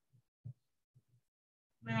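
A few short, soft low thuds, some in close pairs, spaced about half a second apart, in an otherwise quiet stretch. A woman starts to speak right at the end.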